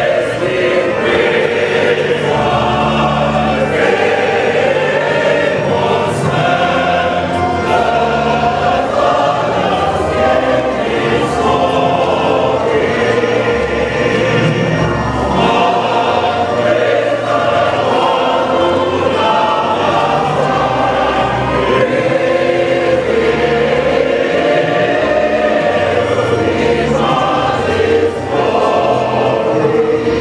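Church choir singing, with held notes over a steady bass line.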